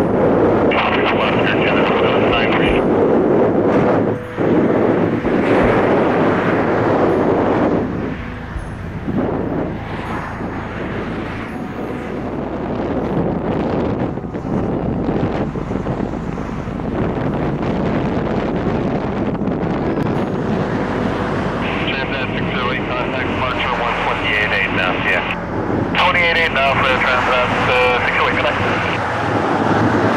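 Jet engine noise from a twin-engine widebody airliner landing and rolling out along the runway, loudest in the first eight seconds, with wind buffeting the microphone. Air-traffic-control radio voices come through over it near the start and again in the last several seconds.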